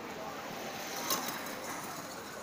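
Street sounds: a motor scooter passing, with distant voices of passers-by. A sharp click sounds about halfway through.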